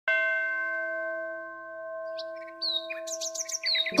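A bell struck once, its tone ringing on and slowly fading, with birds chirping over it from about two seconds in.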